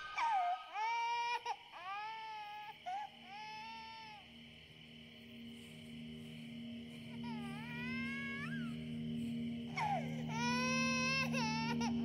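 An infant crying in a series of high-pitched wailing cries, each rising and then falling, with a pause in the middle before the crying picks up again. Under it a low steady drone of film score comes in about three seconds in and slowly grows louder.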